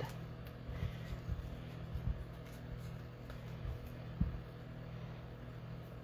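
Faint handling sounds of hands working a ribbon and a paper tag on a craft mat: a few soft low taps scattered through, over a steady low hum.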